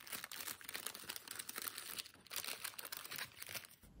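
Small white paper bag being torn open and handled: irregular paper rustling and crinkling with fine crackles.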